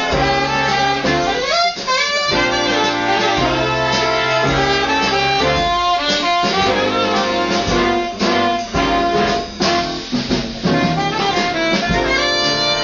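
Live jazz big band playing, with saxophone and brass sections prominent over the rhythm section.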